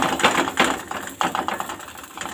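Dough crackling and sizzling in a little hot oil in a heavy frying pan, a dense run of rapid, irregular clicks, with a few louder pats as a hand presses the dough flat.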